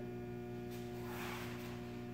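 Room tone: a steady electrical hum of several even, unchanging tones, with a faint soft hiss about a second in.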